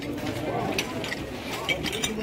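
Voices of people talking, with a few short, sharp clicks among them.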